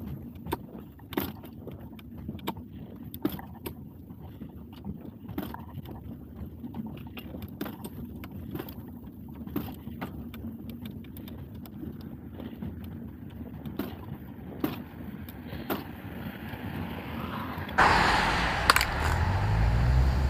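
Touring bicycle's pedal crank clicking irregularly, about once or twice a second, under pedalling, over a low rumble of tyres on the road. The pedal slips through as if jumping a gear, a sign of a damaged washer or bearing inside, as the rider suspects. Near the end a louder rustling noise takes over.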